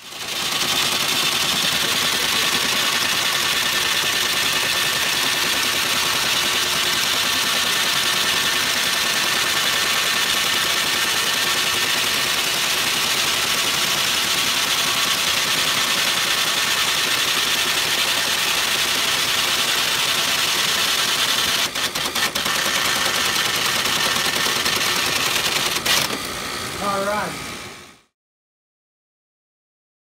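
IBM 1403 impact line printer printing continuously at speed, a loud, dense, cacophonous mechanical chatter, while it runs the powers-of-2 demonstration printout. The sound cuts off abruptly near the end.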